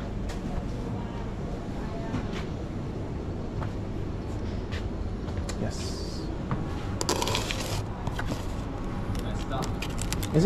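Steady low room hum with faint, indistinct voices, scattered light clicks and knocks, and a brief rustling scrape about seven seconds in.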